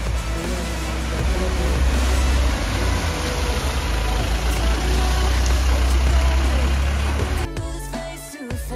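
Pickup truck wading through floodwater over a road, its engine running and water washing off the wheels, mixed with background music. The sound cuts off sharply near the end.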